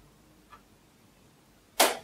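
A quiet pause in a small room with a faint tick, then near the end one short, sharp intake of breath.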